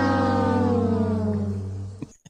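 An outro sound effect: a held, many-toned note whose pitch slowly sinks as it fades out near the end.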